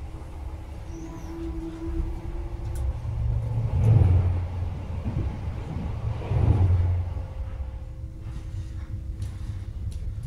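Steady low rumble of a Class 43 HST running on the rails, heard from inside a Mark 3 coach, as an HST going the other way passes on the adjacent track: a loud rush of noise swells about three and a half seconds in, peaks twice a couple of seconds apart, then dies away to the steady running rumble.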